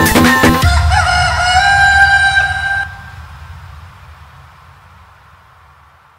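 An electronic DJ dance beat stops about a second in, and a sampled rooster crow rings out for about two seconds. A low rumble stays under it and then fades away.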